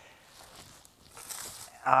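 Mostly quiet, then a brief crisp rustle of dry dead plant stalks and grass from a little over a second in.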